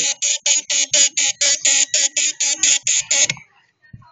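Automotive relay in a Fiat Tipo's engine-bay relay box chattering rapidly with the ignition on and the engine not cranking, about six clicks a second. It is a fault the owner cannot pin down and suspects lies in the fuel injection or fuel pump. The chatter cuts off abruptly just after three seconds in, as the relay is pulled from its socket.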